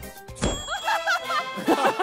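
A sharp hit about half a second in, followed by a ringing ding: a comic 'ding' sound effect added in editing as the swung pole nearly strikes someone.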